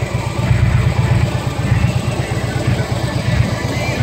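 Harley-Davidson Electra Glide Ultra Limited's Twin Cam 103 V-twin idling through Vance & Hines exhaust, a steady low pulsing beat.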